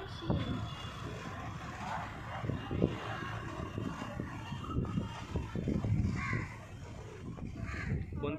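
Crows cawing a few times over outdoor background noise with a low rumble.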